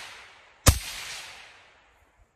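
A single gunshot from an 11.5-inch pistol about two-thirds of a second in, its echo dying away over about a second.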